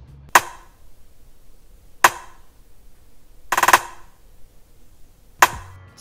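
Trap rimshot sample played solo from a drum-machine pattern: single sharp rim clicks about every 1.7 s. About three and a half seconds in comes a quick roll of rapid rim hits rising in velocity, building up into the note.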